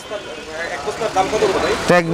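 Busy market background: a steady din of indistinct voices and traffic-like noise, with a man's voice starting close by near the end.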